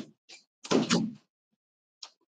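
A door closing: a sharp click, then a louder scraping slide about half a second long, and another short click near the end.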